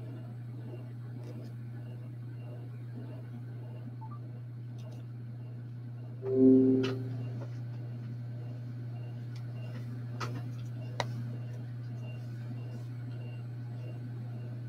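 Quiet handling of a silicone mold as a resin casting is worked out of it, with a few light clicks past the middle, over a steady low hum. About six seconds in there is a brief pitched sound, the loudest thing in the stretch.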